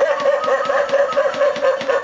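Animated Halloween butler figure's recorded sound track laughing: a rapid run of short, repeated pitched syllables, about six a second, that cuts off suddenly at the end.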